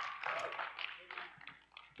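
Congregation's applause dying away into a few scattered hand claps.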